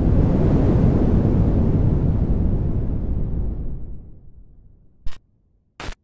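Intro sound effect: a low rushing blast of noise that fades away over about four seconds, then two short sharp hits near the end.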